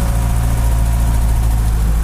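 An old truck's engine running steadily, heard from inside the cab as a low, even hum with no revving.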